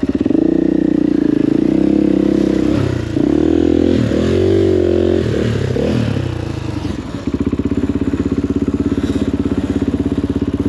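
KTM enduro motorcycle engine working under load through a rocky rut, its pitch rising and falling with repeated bursts of throttle. About seven seconds in it drops to a low, even beat.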